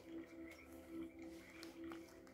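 Faint background music of soft held tones, with a few light taps of tarot cards being handled and laid down.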